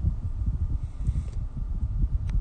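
Low, uneven rumble of wind on the microphone.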